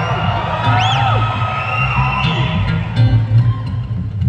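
Acoustic guitar played live through an arena PA, an instrumental passage with a steady low bass line. Audience members call out over it, with a whoop that rises and falls in pitch about a second in.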